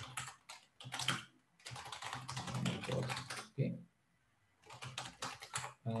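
Computer keyboard typing: quick runs of keystrokes, with a short pause about four seconds in.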